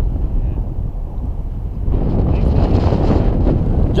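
Wind rushing over the camera microphone in flight: a steady low rumble that grows louder and brighter about halfway through.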